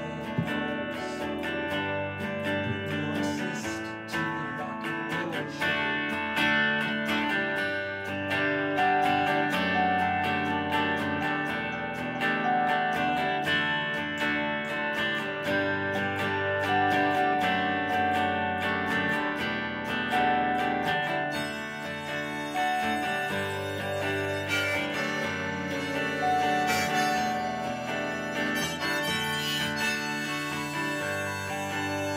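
Live band music: an electric guitar plays with long held notes sounding over it, an instrumental stretch with no singing.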